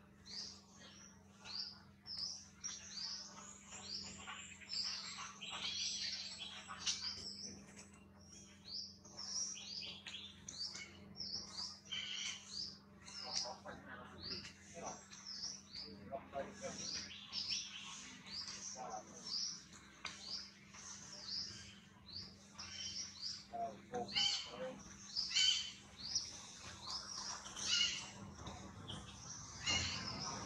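Small birds chirping rapidly and continuously, many short high calls a second, with a faint steady low hum underneath.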